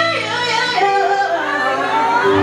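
A woman singing a soulful line live, her voice sliding and bending between notes, over a steady held backing chord.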